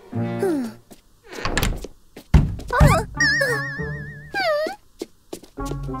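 Cartoon soundtrack of music with comic sound effects: a heavy thunk a little over two seconds in, followed by a wavering, warbling tone and a short swooping tone.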